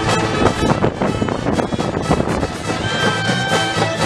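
High school marching band playing live: full ensemble of wind instruments and percussion.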